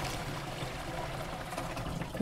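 Water pouring from a plastic jerrycan into another jerrycan, a steady stream.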